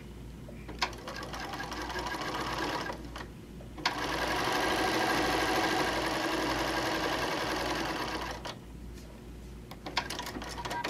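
Bernina sewing machine stitching two seams: a run of about two seconds, a short stop, then a longer, louder run of about four and a half seconds, each run opening with a click.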